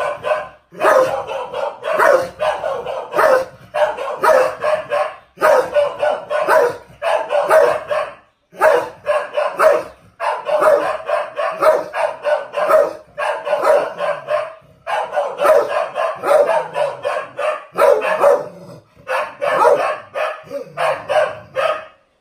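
A large black dog barking hard at its own reflection in a mirror, taking it for an intruder: rapid volleys of barks broken by short pauses every few seconds.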